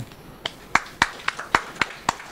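Sparse applause: separate hand claps at an uneven pace of about three or four a second, starting about half a second in.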